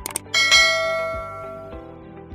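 Subscribe-animation sound effect: two quick clicks, then a bright bell ding that rings out and fades over about a second and a half.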